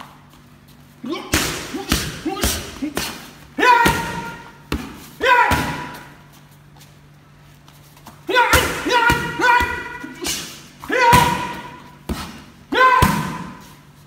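Punches and kicks smacking into leather focus mitts and a belly pad in two quick runs of strikes with a pause between them. Most of the heavier hits come with a short shouted exhale.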